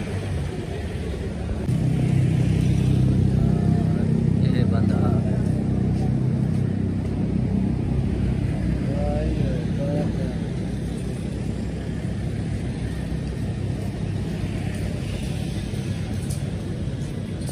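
A motor vehicle's engine running, getting louder about two seconds in and easing off after about ten seconds, with faint voices in the background.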